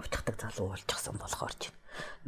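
Quiet, whispered-sounding speech in short fragments, much softer than the full-voiced talk around it.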